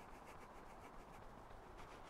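Near silence: faint background hiss with a few faint rustles.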